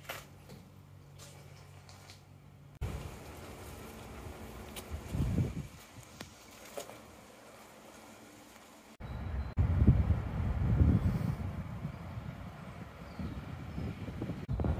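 Background noise across edited clips, no speech: a faint steady low hum at first, then after a sharp cut about nine seconds in, a louder low rumbling noise.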